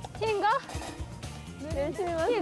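Brief spoken voices over quiet background music: a short stretch of talk near the start and more talk starting near the end.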